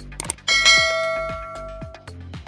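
A single bell-chime sound effect, the ding of a subscribe-button notification-bell animation, struck about half a second in and ringing down over the next second and a half. Background music with a repeating beat runs underneath.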